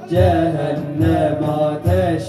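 Male voices singing a Turkish Sufi hymn (ilahi) in long held, wavering notes, accompanied by a large frame drum giving three deep beats.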